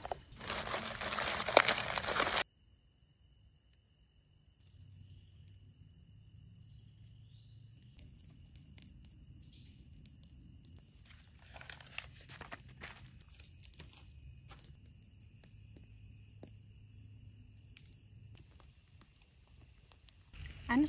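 A food pouch and aluminium foil crinkling as chickpeas are poured out onto the foil, loud for about two seconds and cut off suddenly. After that a campfire crackles faintly with scattered small pops under a steady high drone of crickets.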